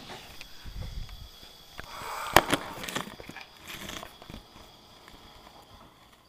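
Rustling and bumping from a handheld camera being moved about, with a sharp knock about two and a half seconds in; it fades away over the last second or so.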